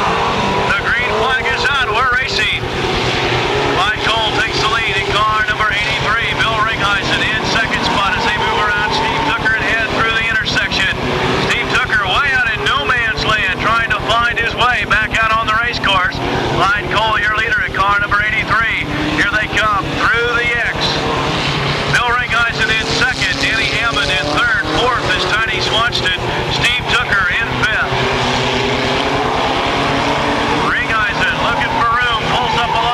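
Engines of several mini stock race cars revving, their pitch rising and falling over and over as the cars accelerate, lift and pass.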